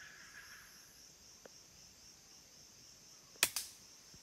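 A rifle fired once upward into the trees: a sharp crack about three and a half seconds in, with a second smaller crack right after it. A steady high chorus of forest insects runs underneath.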